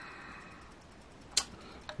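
A coin tapping once on a scratch-off lottery ticket, a single sharp click about one and a half seconds in, with a fainter tick shortly after; otherwise quiet.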